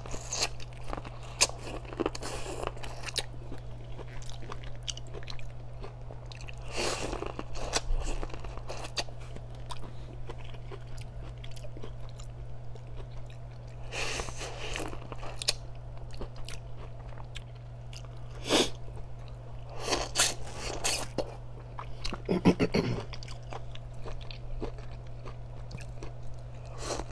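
Close-miked biting and chewing of boiled corn on the cob: crunching bites into the kernels and wet chewing, with a handful of louder bites spread through.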